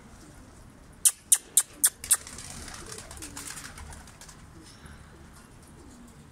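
Five sharp claps about a second in, roughly four a second, followed by a couple of seconds of softer flutter. Domestic pigeons coo faintly throughout.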